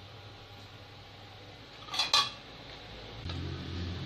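A metal slotted spoon clinks twice against an iron kadai about two seconds in, over faint sizzling of seedai balls deep-frying in hot oil.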